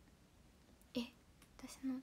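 A young woman's voice speaking Japanese: after about a second of faint room tone, a short word about a second in, then a brief phrase near the end.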